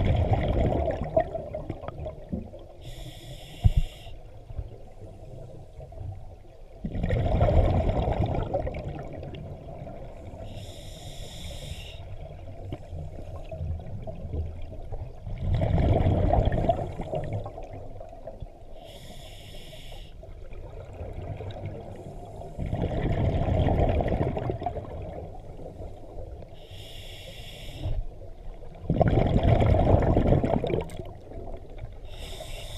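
Scuba diver breathing through a regulator underwater. A short hissing inhale comes roughly every seven to eight seconds, and each is followed a few seconds later by a louder, longer rumbling rush of exhaled bubbles.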